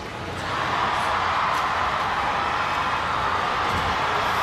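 Stadium crowd cheering, a steady roar that swells about half a second in and holds through the race.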